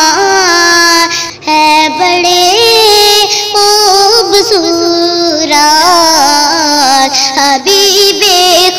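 A high voice singing a naat melody, with long held notes and sliding ornamental bends between them.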